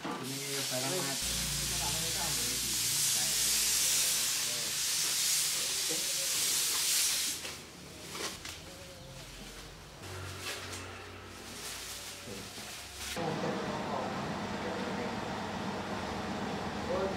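A steady loud hiss for about seven seconds, then the irregular crinkling and rustling of clear plastic masking sheet being pulled and pressed over a car body, which stops about thirteen seconds in.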